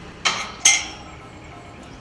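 A galvanised steel kissing gate clanking twice against its frame and latch, each knock followed by a brief metallic ring.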